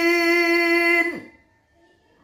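A man's voice in melodic Quran recitation (tilawah), holding one long steady note. The note ends about a second in with a short downward slide.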